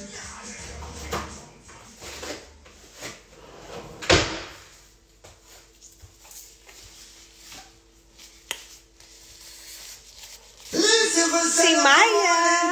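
Background music with a bass line fades out. About four seconds in there is a single sharp knock, then a faint steady hum, and a woman's voice starts loudly near the end.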